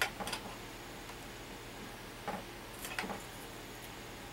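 A few light clicks and taps: a heated wax-art stylus knocking against its metal tool warmer as crayon wax is loaded onto the tip. Two clicks come right at the start, another a couple of seconds in, and a small cluster shortly after.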